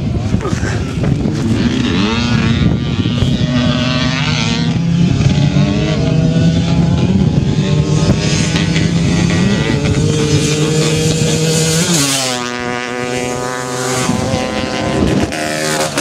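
Racing quad (ATV) engines at full throttle, the engine note climbing in steps as the gears are run through. About twelve seconds in the note changes and falls away.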